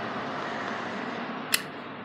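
Steady background hiss of room noise, with a single sharp click about one and a half seconds in.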